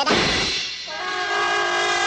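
Cartoon impact as a bird's beak strikes and sticks into a ship's mast: a sudden hit with a low rumble dying away over half a second. From about a second in, a held brass chord follows.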